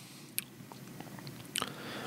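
Soft mouth sounds of a man tasting a mouthful of beer: small lip smacks and tongue clicks, one about half a second in and a short cluster of them about a second and a half in.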